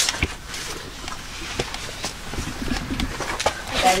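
Shoes and hands scuffing and knocking against rock as people squeeze through a narrow cave crevice, with a few sharp taps and low vocal sounds.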